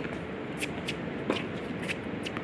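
Tennis rally on a hard court: sharp clicks of the racquet meeting the ball and the ball bouncing, the strongest a little past halfway, along with quick shoe scuffs on the court surface.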